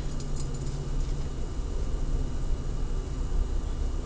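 Faint jingling of metal bangle bracelets as the arm moves, over a low steady room hum.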